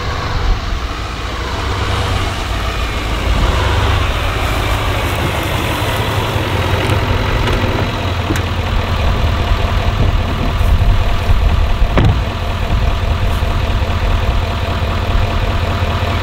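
A pickup truck engine idling with a steady low rumble that swells slightly over the first few seconds. There is one short click about twelve seconds in.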